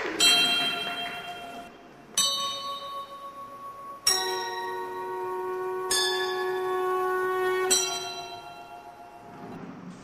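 Bell chimes struck five times, about every two seconds, each strike ringing on with several steady tones and then fading away near the end.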